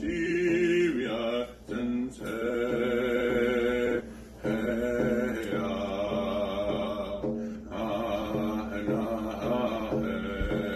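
A man singing a chanted song in long, held phrases, with short breaks for breath about a second and a half, four, and seven and a half seconds in, accompanied by a handheld rawhide frame drum struck with a beater.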